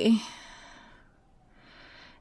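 A woman's sigh: her voice trails off at the start into a breathy exhale that fades away over about a second, with a faint breath again near the end.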